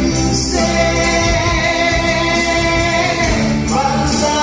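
A man singing a gospel-style song into a microphone over amplified backing music with a steady beat, holding long notes.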